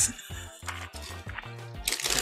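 Background music with a steady, repeating bass line, and a brief hiss near the end.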